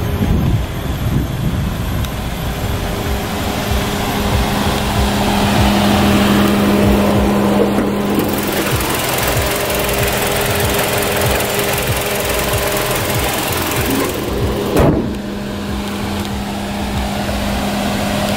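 Hyundai Tucson's four-cylinder petrol engine idling, a steady hum, with a single brief knock near the end.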